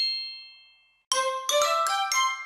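A short musical jingle: a chime rings out and fades, then after a brief gap a quick run of bright, chime-like notes climbs upward in pitch.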